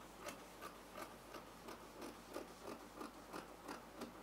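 Scissors cutting fabric in a steady run of faint snips, about three a second, as a cut edge is trimmed.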